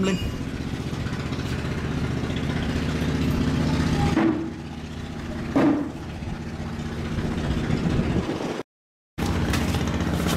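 A motor engine running steadily, a low hum that dips briefly about halfway and cuts out for half a second near the end.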